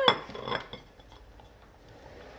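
A plate is set down on a wooden floor with a sharp clack, followed by a few light clinks as a dog's mouth starts working at the food on it; then it goes faint.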